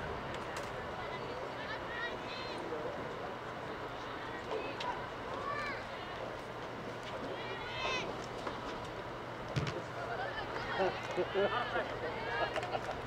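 Soccer field ambience: scattered distant shouts and calls from players and spectators over a steady background murmur and a low hum, with a dull thump a little before the end.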